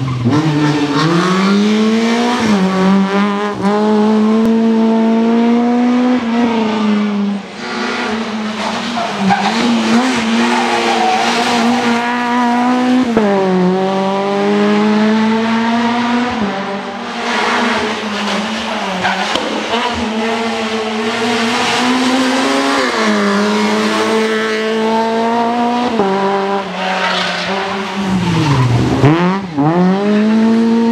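Škoda Fabia R2 rally car's engine at full throttle on a tarmac stage, rising in pitch through each gear and dropping sharply at every upshift, over several passes.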